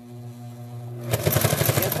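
A domestic electric sewing machine: a steady motor hum, then about a second in it speeds up into rapid stitching, a fast even clatter that is louder than the hum.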